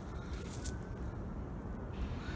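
Quiet, steady low rumble of outdoor background noise with no distinct event.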